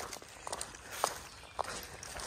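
A hiker's footsteps on a dirt, leaf and rock forest trail, about two steps a second.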